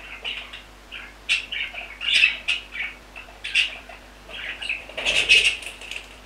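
Budgerigars chattering in short, scratchy chirps at a nest box entrance, with a louder flurry of chirps and wing flutter about five seconds in.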